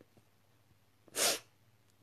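A crying woman's single short, sharp noisy breath about a second in, between her sobbing words.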